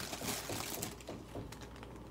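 Small plastic bags of diamond-painting drills being handled: light crinkling of plastic with irregular small ticks as the drills shift, dying down near the end.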